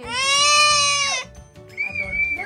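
A single long, high-pitched vocal squeal, held for about a second and falling in pitch as it stops.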